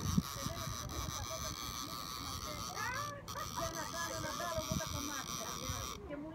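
Indistinct background chatter of several people talking at a distance, with no clear words, over a low rumble of wind on the microphone.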